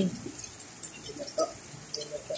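Heavy rain falling steadily, heard as an even hiss, with a few faint short calls in the middle.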